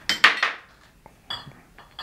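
Empty glass whiskey bottles clinking against each other in a bag as one is pulled out. There is a sharp, loud clink about a quarter second in, then a lighter ringing clink just past the middle.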